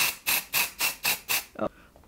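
Aerosol dry shampoo sprayed onto hair in a quick series of short hissing bursts, about four a second, stopping suddenly a little before the end.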